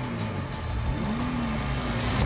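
Ford 3.7-litre V6 engines of Ginetta G56 GTA race cars running on the starting grid, with one rev rising and falling about a second in.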